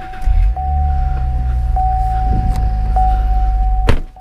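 A car's warning chime sounding steadily, re-struck about once every second and a bit; about a third of a second in, the 2016 Cadillac ATS-V's twin-turbo V6 starts with a brief flare and settles into a steady low idle. A sharp click comes near the end.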